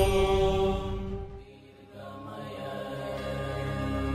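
Chanted Sanskrit peace mantra over a drone accompaniment: the held final note fades out about a second and a half in, then soft music with a steady drone swells back in.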